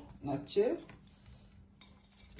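Faint light taps and clinks of a plate and pan as sliced green pepper rings are dropped by hand onto meat and onions.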